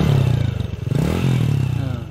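Motorcycle engine running, with a brief rev that rises and falls about a second in.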